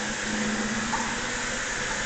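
Flush water from an overhead cistern running down a tiled communal trough toilet: a steady rushing hiss of flowing water.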